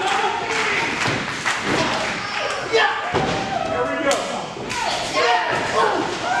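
Repeated thuds of wrestlers' blows and bodies landing in a wrestling ring, roughly one a second. Voices shout throughout.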